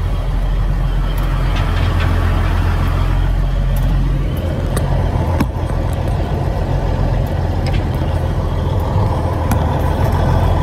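Semi truck's diesel engine running under way, a steady low drone heard from the cab, with the engine note rising about four seconds in. Occasional light clicks sound over it.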